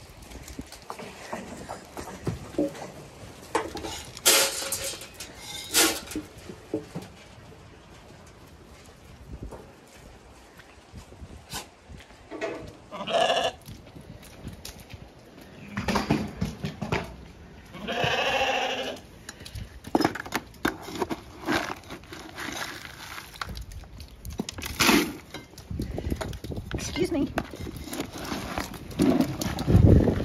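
Zwartbles sheep bleating: a short bleat about halfway through and a longer, wavering one a few seconds later. A few sharp knocks come in between, and wind rumbles on the microphone near the end.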